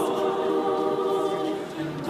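A cappella choir of women's voices singing held chords with no instruments. The sound dips briefly near the end.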